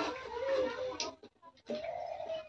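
Hot oil sizzling in an iron wok while fried pakoras are scooped out with a metal slotted spoon, with a sharp clink about a second in. A faint wavering tone sits over the sizzle, and the sound drops out briefly just after the clink.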